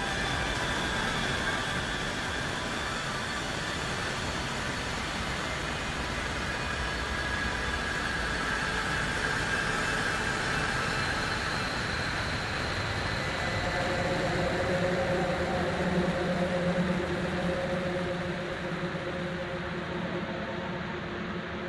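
Dark ambient soundtrack drone: a steady, rumbling noise bed with faint held tones. About two-thirds of the way through, sustained low and mid tones come in and swell, then ease near the end.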